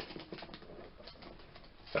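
Faint, irregular rustling and clicking of a small packet being handled and opened in the fingers.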